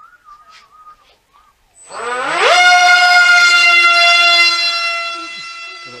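Electric motor and propeller of a mini remote-control plane powering up: a whine that rises quickly in pitch about two seconds in, then holds a steady pitch and slowly fades.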